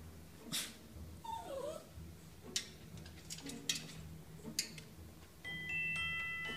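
A Border Terrier giving one short, wavering whimper, with a few sharp taps of its paws against a mirror.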